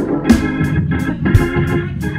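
Gospel music: sustained electric organ chords with percussion hits on the beat, with the choir's singing.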